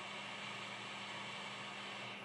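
Hot air rework station blowing a steady airy hiss with a low hum, set to 380 °C and 40% airflow, melting the solder under a phone motherboard chip so it can be lifted off.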